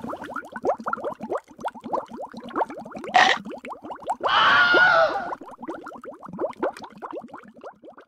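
Underwater bubbling sound effect: a stream of small, quick bubble plops, each rising in pitch. There is a short sharp burst about three seconds in, and a louder, noisier sound lasting about a second just past the middle.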